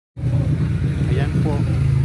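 A motor vehicle engine running steadily, a loud low hum, with faint voices talking over it.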